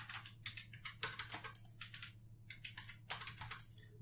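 Computer keyboard keys tapped in an irregular run of faint clicks, with a short pause about halfway through, as a number is typed into a CT workstation.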